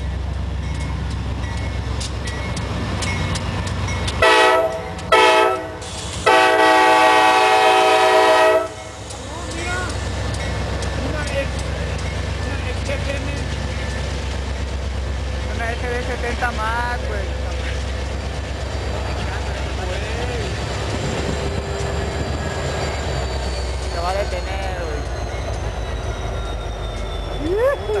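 Lead locomotive's multi-chime air horn, two short blasts then one longer blast, over the steady rumble of KCSM GE AC4400CW 4549 and KCS SD70MAC 3946 diesel locomotives pulling a freight train past.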